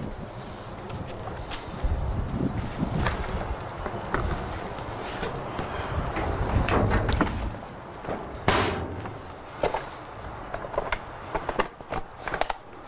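Handling sounds as ground turkey goes into a blender jar and the lid is set on: a scatter of knocks and clicks, with a louder knock about eight and a half seconds in and more clicks near the end, over a low rumble that fades after about seven seconds.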